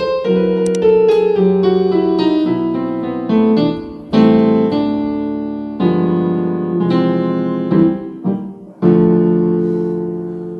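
Piano playing a slow chord progression: full chords struck one after another and left to ring, with the last chord, struck near the end, held and fading away.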